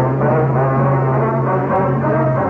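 Orchestral brass music, a low brass note held steady under higher brass lines.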